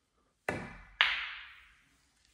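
Two sharp clacks of a snooker shot half a second apart, as the cue strikes the cue ball and the balls collide; the second is louder and rings off briefly.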